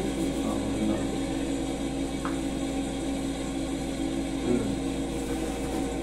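A steady machine hum in a small room, with a faint short sound about two seconds in.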